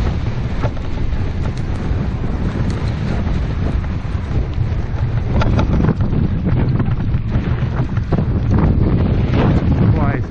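Wind buffeting a helmet-mounted camera's microphone at speed: a steady low rumble with scattered light ticks through it.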